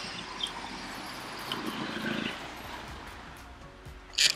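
Soft background music over street noise.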